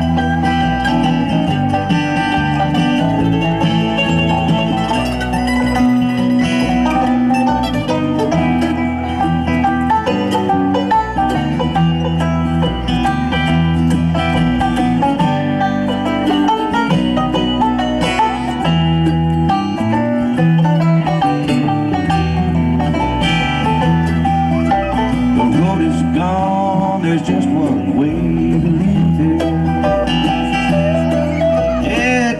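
Live bluegrass band playing an instrumental passage on banjo, mandolin, acoustic guitar and bass, with no singing.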